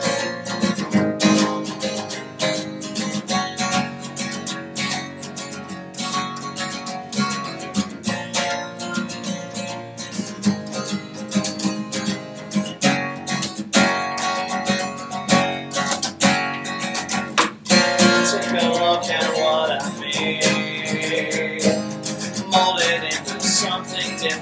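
Acoustic guitar strummed in a steady rhythm, with an acoustic bass guitar playing along underneath: an instrumental passage of an acoustic duo's song.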